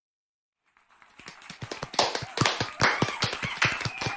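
A small group applauding the end of a spoken-word piece. The dense, irregular claps start about a second in, build quickly and then keep going.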